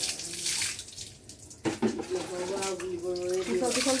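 Water poured from a plastic mug over a wet dog's back, splashing and running off onto concrete, with one pour at the start and another near the end.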